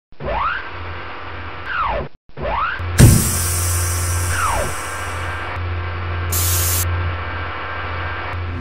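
Intro stinger of sound effects: swooshing sweeps that rise and fall in pitch, a hard impact about three seconds in followed by a hiss, then a steady low hum with a short burst of hiss a little past the middle.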